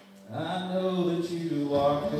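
A man singing a worship song into a microphone, coming in about a third of a second in with a long held note and moving to a second held note near the end.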